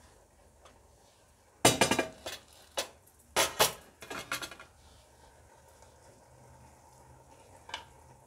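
Cookware clatter: a quick run of sharp clinks and knocks, a utensil or lid striking the pot, from about two seconds in to about four and a half, then quiet apart from one small click near the end.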